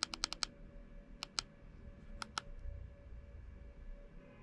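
Plastic buttons on a Yiben P47L pocket e-reader clicking as menus are stepped through: a quick run of about four clicks at the start, then two pairs of clicks about a second apart.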